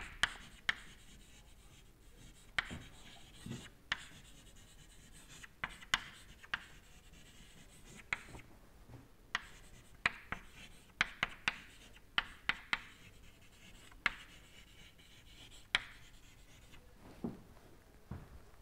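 Chalk writing on a chalkboard: irregular, sharp taps and short scrapes as each letter is stroked out, faint against a quiet room.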